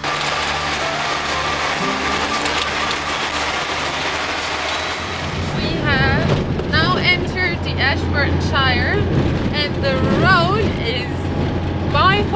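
Unimog expedition truck driving over a corrugated gravel road: a dense, continuous rattle of the washboard surface. About halfway through, a woman's voice comes in over the engine's low drone in the cab.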